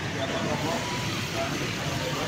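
Steady outdoor street ambience: a crowd of people talking at a distance over a low vehicle engine hum.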